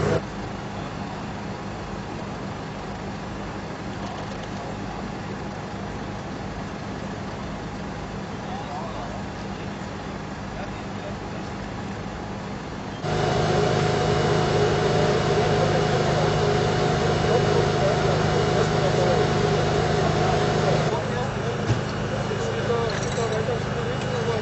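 Steady engine hum of idling emergency vehicles, with rescuers' voices in the background. About halfway through it becomes suddenly louder, with a higher steady hum joining in, and it drops back somewhat near the end.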